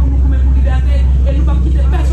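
A woman speaking forcefully into a handheld microphone, over a steady low hum.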